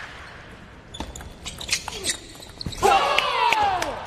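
Table tennis rally: sharp clicks of the celluloid ball off rackets and table, then a player's loud, long shout of celebration as the point is won, falling in pitch, the loudest sound.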